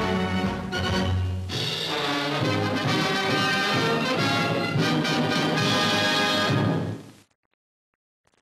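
Closing theme music, which stops fairly suddenly about seven seconds in.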